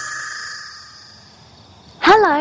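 A held high musical tone, like a chime or synth sting marking a scene change, that fades away slowly.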